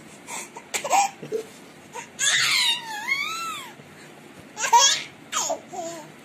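Baby laughing in short bursts, with a longer high squeal about two seconds in whose pitch dips and rises.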